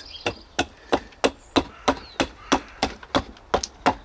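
Small hatchet axe chopping into a block of damp lime wood, about a dozen short, sharp strikes at a steady rate of roughly three a second, roughing out the shape for a whittled bird.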